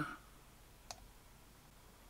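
A single computer mouse button click about a second in, against faint room tone.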